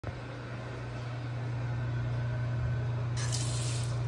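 Water running from a bathroom faucet into a sink, over a steady low hum; the splashing turns brighter and hissier near the end.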